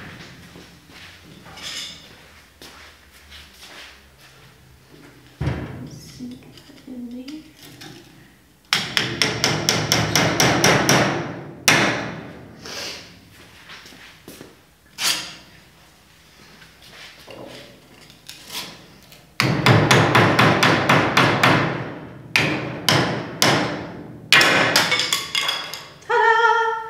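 Rubber mallet tapping tapered wooden shims into the glue seams between old hardwood boards, wedging the joints apart a little at a time. Scattered single knocks, then two long runs of quick, even taps, one about nine seconds in and a longer one from about nineteen seconds.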